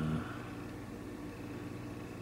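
A steady low mechanical hum with a few fixed low tones, with the tail of a spoken word at the very start.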